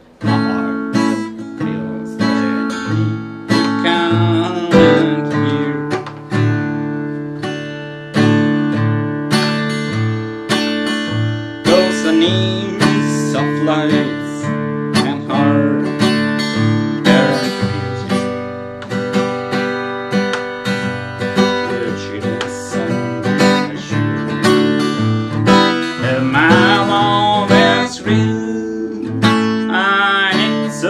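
Mahogany Harley Benton acoustic guitar strummed in a steady country rhythm, with bass notes picked between the strums.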